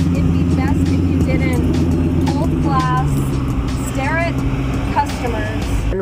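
A motor vehicle's engine running steadily close by, a loud low rumble whose pitch drops slightly about halfway through; a woman's voice talks over it.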